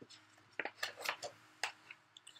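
Pages of a picture book being turned by hand: a few short, faint paper crinkles and clicks.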